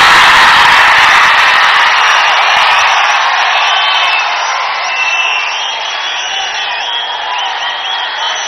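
A large crowd cheering and shouting, loudest at first and gradually dying down, with high shrill whistles over it in the second half.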